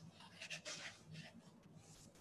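Near silence: faint room tone with a few soft clicks about half a second in.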